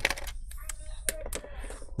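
A few light, sharp clicks and taps from hands handling a laptop's bottom cover.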